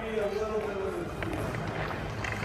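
A person's voice calling out in the first second, with words that cannot be made out, then the scrape and click of ice-skate blades as a skater moves across the ice.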